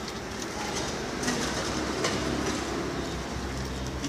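A steady low rumble with a few faint clinks of small metal coins being handled and set down on a wooden table.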